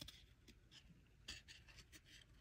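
Faint scraping and a few light ticks of glossy trading cards being slid off one another in the hand.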